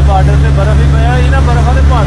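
A motorboat's engine running with a steady low drone, with voices talking over it.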